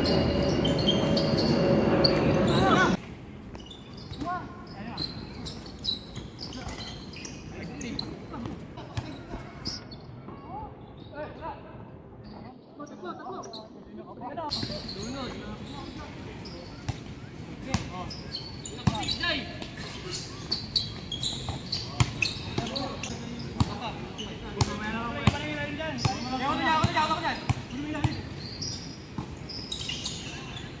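A basketball bouncing and slapping on an outdoor concrete court during a game, in sharp irregular strikes, with players shouting to each other. A louder, denser stretch of sound in the first three seconds cuts off abruptly.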